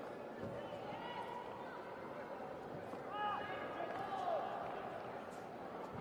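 Arena background of indistinct voices and crowd murmur around a taekwondo bout. A few short, high squeaks come about three to four seconds in.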